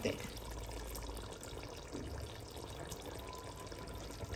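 Chicken gravy simmering in a large aluminium pot on the stove, a steady low sound of cooking liquid.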